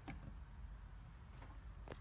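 Quiet room tone: a faint steady high whine over a low hum, with a faint click near the end.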